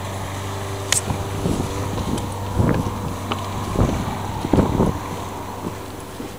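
A steady low mechanical hum, with a sharp click about a second in and several irregular low thumps through the middle.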